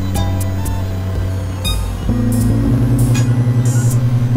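Experimental synthesizer music: sustained low drone tones that shift to new pitches about halfway through and then pulse rapidly, with short swells of high hiss scattered over them.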